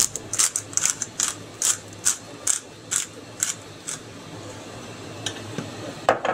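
Hand-twisted pepper mill grinding pepper over a bowl of meatball mix: a run of even, crisp grinding strokes about two and a half a second, stopping about four seconds in.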